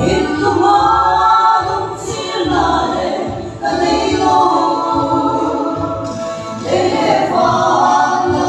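A women's vocal group singing a gospel song together in harmony, with low bass notes moving beneath the voices.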